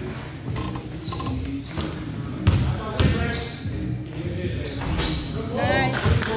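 Basketball game on a gym court: sneakers squeaking on the floor again and again as players cut and stop, and a basketball bouncing, with two loud thuds about halfway through. All of it echoes in the large hall.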